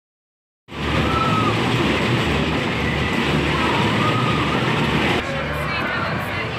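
Fairground ambience, starting after a second of silence: a dense wash of crowd voices and ride machinery, with a few short rising-and-falling high tones over it. About five seconds in it cuts abruptly to a slightly quieter, different mix.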